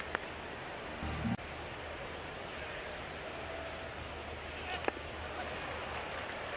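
Steady ballpark crowd noise from a large stadium, with a couple of short sharp clicks and a brief low thump about a second in.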